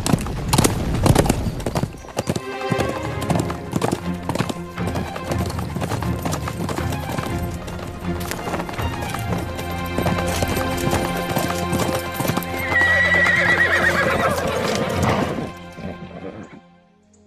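Hoofbeats of several galloping horses, a dense run of clattering strikes, with orchestral music underneath. A horse whinnies loudly about three-quarters of the way through.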